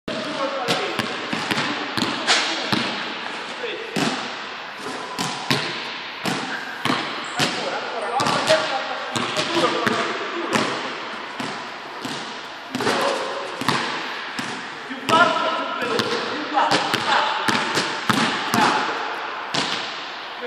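Basketball dribbled on an indoor court floor, a run of sharp bounces at an uneven pace, each ringing out in the large hall.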